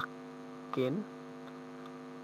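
Steady electrical mains hum, with a short voice sound just under a second in.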